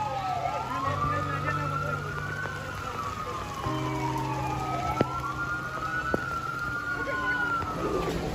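Emergency vehicle siren wailing, its pitch slowly falling and rising about every four seconds, over a low steady hum.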